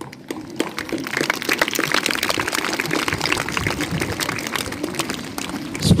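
A large crowd of schoolchildren clapping in applause, swelling over the first second and then holding steady.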